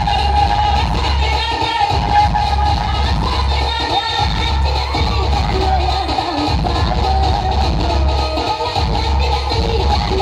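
Loud dance music with a heavy, repeating bass beat, with crowd voices underneath.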